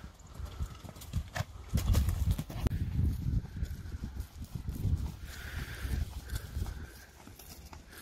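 A pony's hoofbeats at a canter on grass, a dull uneven thudding that is loudest in the first half and fades later.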